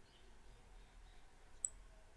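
Near silence broken by a single short, sharp click of a computer mouse about one and a half seconds in.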